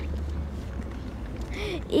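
Steady low wind rumble on the microphone during a pause in a girl's speech, with her voice starting again near the end.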